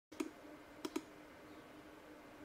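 Three short, sharp clicks, one about a fifth of a second in and a close pair near the one-second mark, over a faint steady hum.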